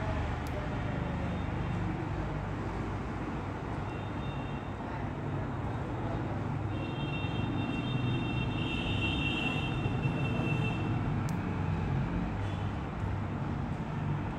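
Steady low background rumble and hiss, with faint high-pitched tones sounding for a few seconds in the middle.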